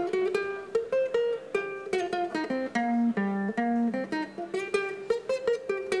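Ukulele played as single picked notes, a quick improvised melodic line of several notes a second moving up and down a pentatonic scale.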